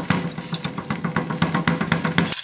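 Drumming heard in the background: a quick run of sharp beats, several a second, over a steady low hum.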